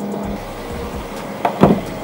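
Fuel pump at a petrol station running with a steady hum while petrol is dispensed through the nozzle into the car, with a short louder sound about one and a half seconds in.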